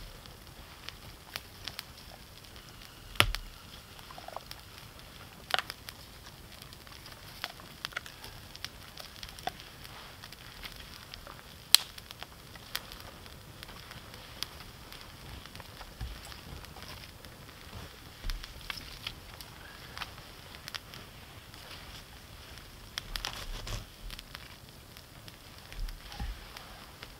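Small, newly lit campfire of dry twigs and kindling crackling, with scattered sharp pops over a faint hiss. Two louder snaps stand out, about three seconds in and near the middle.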